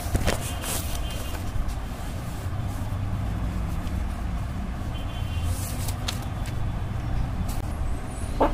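Steady low background rumble with a few short rustles and clicks of paper being handled, the loudest around the first second as a book page is turned.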